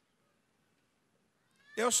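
Near silence, then near the end a man's voice starts speaking into a handheld microphone, its first syllable drawn out and rising in pitch.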